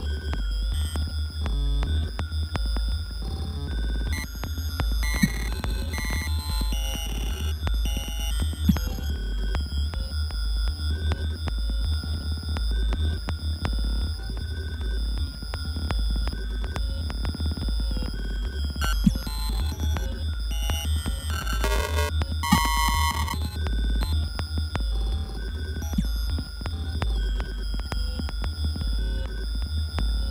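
Live improvised electronic music: a pulsing low bass under steady high sustained tones and scattered glitchy clicks, with a brief cluster of stacked high tones about 22 seconds in.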